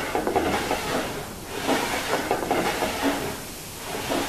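Plywood tenon jig sliding back and forth along a table saw's metal fence, wood rubbing on metal in a few swelling passes; the runners are freshly waxed with beeswax so the jig glides.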